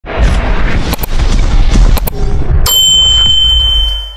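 Intro sound effects for an animated logo: a loud, deep rumbling boom with a few sharp hits, then a sudden bright hit about two-thirds of the way through leaving a single high ringing tone that holds as the sound fades at the end.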